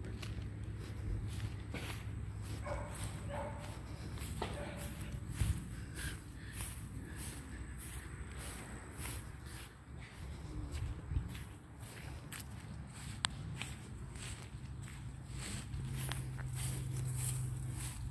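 Footsteps on a grass lawn and the rustle of a handheld camera being carried while walking, a string of soft irregular steps over a low steady rumble.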